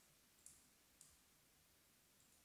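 Near silence: quiet room tone broken by two faint, short clicks about half a second apart.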